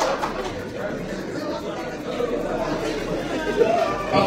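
Indistinct chatter of many voices in a large hall, a crowd of guests murmuring steadily with no single voice standing out.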